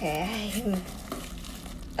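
A woman says a drawn-out, wavering "okay". Then comes quieter handling of a cardboard box as its flaps are pulled open, with light crinkling.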